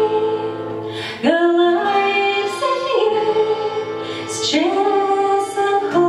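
A woman singing a slow song in long held notes that change pitch about once a second, accompanied by accordion and acoustic guitar.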